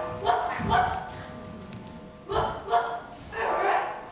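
Stage barking by the actor playing a dog, in several short bursts that pitch up and down like yelps. A faint steady held note sits underneath in the first half.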